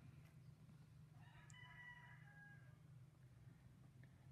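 Near silence: faint room tone, with a faint, distant pitched call starting about a second in and lasting about a second and a half.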